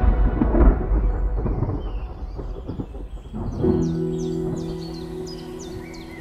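A long rumble of thunder fading away. About halfway through, birds start chirping in short high calls about twice a second, and a held music chord comes in.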